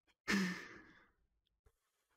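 A man's breathy exhale as his laughter winds down, a short sigh-like breath that fades out within about a second.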